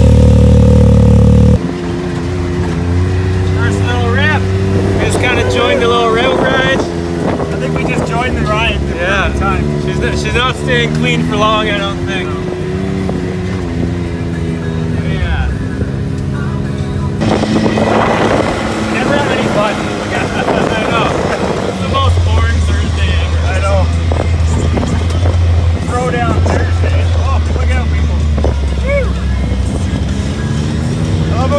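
A Can-Am Maverick X3 running loud through its MBRP dual-canister exhaust, cut off suddenly about a second and a half in. After that comes softer engine noise of the UTV and ATVs on a dirt trail, with a voice laid over it for much of the time.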